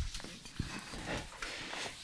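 Dry-erase marker on a whiteboard: faint, irregular squeaks and small taps as it writes.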